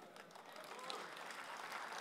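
Faint applause from a hall audience, slowly growing louder, with a few distant voices in it.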